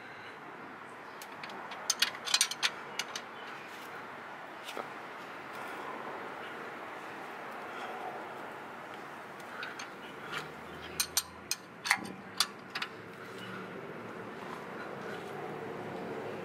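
Metal clicks and clinks of a socket wrench with an extension being worked on the dry-sump drain plug of a C7 Corvette as it is snugged back in, in two short bursts of clicking, once about two seconds in and again around ten to thirteen seconds in.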